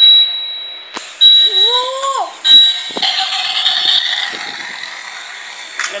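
A Petron toy car's electronic sound effect: a thin, high, steady beep that cuts out briefly a couple of times, with a few sharp clicks as the toy is handled.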